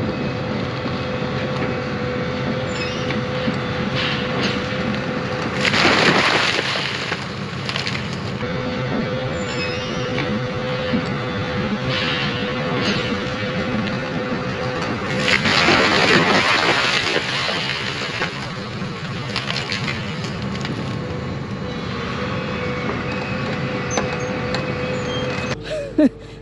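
Link-Belt 330 excavator running steadily under load as its bucket pushes over a split, rotten oak tree. There are two louder bursts, of a second or two each, about six seconds in and again about fifteen seconds in, as the trunk cracks and gives way.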